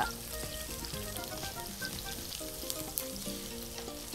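Food sizzling quietly in a frying pan as it is stirred with a wooden spatula, under soft background music of short, steady notes.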